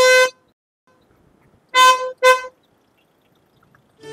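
Car horn of a Volkswagen car: one short honk, then about a second and a half later two quick honks in a row.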